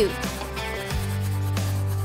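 Background music with steady low bass notes, under a felt-tip marker rubbing across the surface of an adhesive bandage as it colours in.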